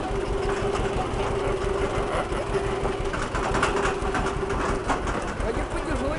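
Engine of an open passenger shuttle running steadily under way, a low rumble with a steady hum through the first half.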